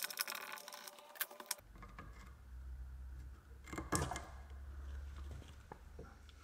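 Light clicks and scrapes of a camshaft position sensor being pushed and worked out of its bore in the cylinder head. There is a sharper knock about four seconds in, and a low steady hum underneath from about a second and a half in.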